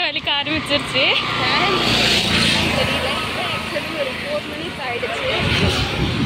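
A road vehicle passing close by, its tyre and engine noise swelling about two seconds in and then fading, with faint voices underneath.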